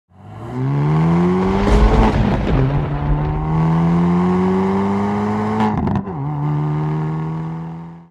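Car engine accelerating hard through the gears: its pitch climbs, drops at a gear change about two seconds in, climbs again, drops at a second change about six seconds in, then holds steady and fades out near the end.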